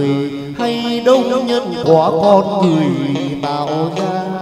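Chầu văn ritual music: a singer holding long notes that slide and waver, over steady instrumental accompaniment.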